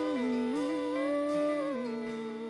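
A singer's voice holding a slow, wordless melody line over quiet band accompaniment. One note rises and is held before dropping near the end.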